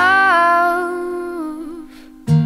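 Music: a singer holds the last note of a song line over a steady low accompanying note, and both fade out over about two seconds.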